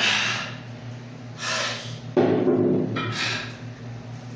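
A man breathing out hard in short, forceful puffs while straining through an exercise, four times, the third a brief grunt. A steady low hum runs underneath.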